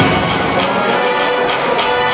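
Music for a dance routine begins with a strong first beat and carries on with a regular beat.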